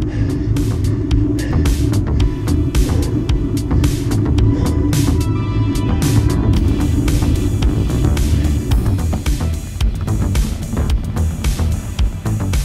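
Background music with a steady beat, over a low rumble of wind on the camera from riding a road bike; the rumble fades out about ten seconds in.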